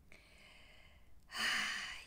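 A woman's slow breath close to the microphone: faint at first, then a louder, deeper breath lasting under a second in the second half, a relaxing breath taken as part of guided breathing.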